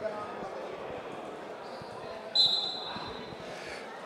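Low crowd murmur with one short, shrill referee's whistle blast about halfway through, signalling the wrestlers to resume the bout.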